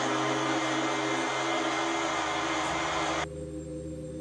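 Horror-film sound design: a loud, steady rushing hiss over a low droning chord. The hiss cuts off suddenly about three seconds in, leaving the drone.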